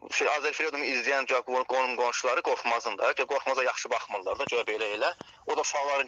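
Speech only: a person talking almost without pause, with a brief lull about five seconds in.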